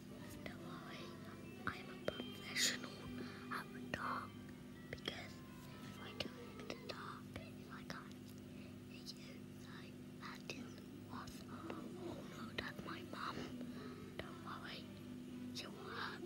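A child whispering softly near the microphone in short, breathy snatches, over a steady low hum.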